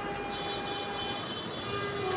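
A distant horn sounding, several steady tones held together.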